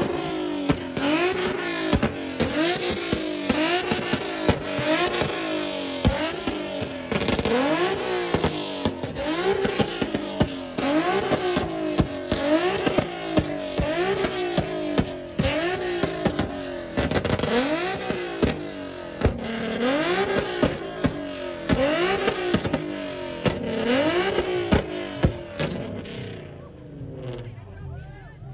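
Nissan 350Z's V6 revved hard again and again in quick blips, its pitch climbing and dropping roughly once a second, with sharp exhaust pops between revs. The sound fades out near the end.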